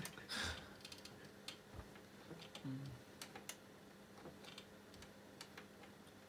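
Quiet room with a faint steady hum, broken by scattered light clicks and taps and a short low murmur about halfway through.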